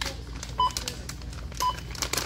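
A checkout barcode scanner beeping twice, about a second apart, as items are rung up, with light clicks and rustling of items being handled.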